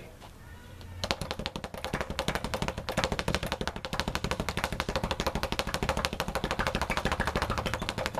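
Leather speed bag being punched in a continuous fist roll, kept up near the wooden rebound platform: a fast, even rattle of strikes and rebounds that starts about a second in and keeps going.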